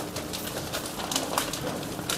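Brown-paper food wrappers being handled and folded on a stainless-steel table: light scattered rustles and taps over a steady low hum.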